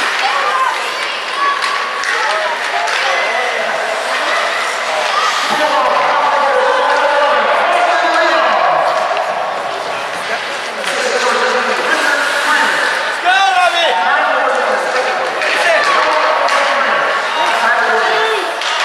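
Spectators chattering and calling out at an indoor ice hockey game, with sharp knocks of sticks and puck against the boards. A high wavering shout comes about halfway through.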